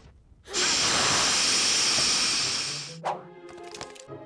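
Cartoon sound effect: a loud, steady hiss lasting a little over two seconds that tapers off, followed by a short knock and music with long held notes.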